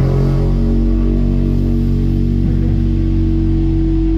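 Electric guitar and bass guitar holding a sustained amplified chord with no drums; one note swells louder near the end.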